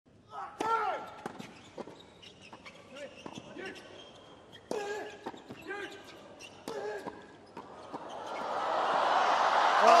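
Tennis racquets striking the ball in a fast exchange of volleys, a string of sharp pops with short shouts from the players between some of the shots. From about eight seconds in, crowd cheering and applause swells up at the end of the point.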